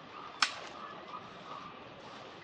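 A single sharp crack about half a second in, over faint background hiss and a faint steady high tone.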